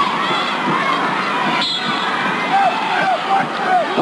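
Arena crowd cheering and shouting, with single voices yelling out over it in the second half.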